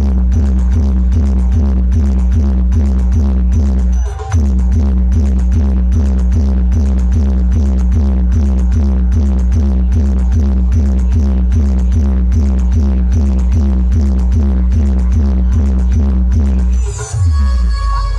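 Loud electronic dance music with heavy bass and a steady fast beat, played through a large street DJ sound-box rig. The beat drops out briefly about four seconds in. It stops near the end, giving way to a different passage with held tones.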